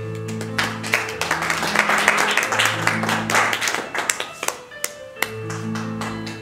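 Digital piano playing a slow accompaniment of sustained chords. An audience applauds over it from about half a second in, loudest in the middle, and dies away with a few last claps near the end.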